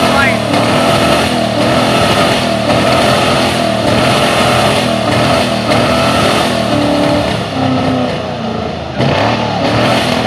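Rat rod engines revving hard for their exhaust flamethrowers, a loud, rough running that rises and falls continuously, with a brief dip shortly before the end.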